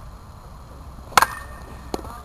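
A baseball bat hitting a pitched ball about a second in: one sharp crack with a brief ring after it. A fainter click follows just before the end.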